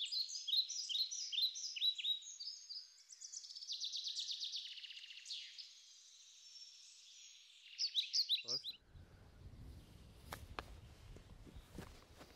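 Songbirds chirping and singing, with a fast trill near the middle. The sound is thin and high, with nothing low beneath it. After about eight and a half seconds it gives way to faint outdoor background noise with a few soft clicks.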